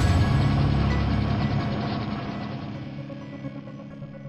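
Logo sting from a show intro: mechanical clicking sound effects over sustained musical tones, fading away steadily.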